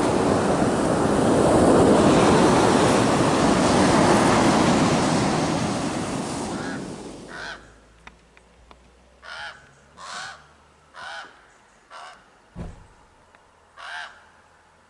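Wind and surf noise on the microphone that fades out about seven seconds in, followed by a corvid giving a series of harsh caws, about one a second, with a single low thump near the end.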